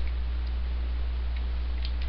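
Steady low electrical hum from the recording setup, with a few faint, irregularly spaced clicks from a computer mouse.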